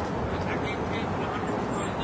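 Busy street ambience: steady traffic noise from cars passing on the road, with faint distant voices.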